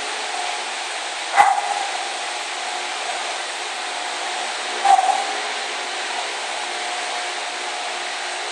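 Steady rushing background noise, broken by two short sounds: a sharp click with a brief tone about a second and a half in, and a shorter burst near five seconds.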